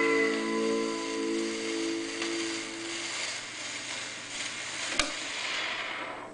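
The closing held chord of a 1956 rockabilly record on a shellac 78 rpm disc fades out about three seconds in, leaving the record's surface hiss and crackle. A single sharp click comes about five seconds in.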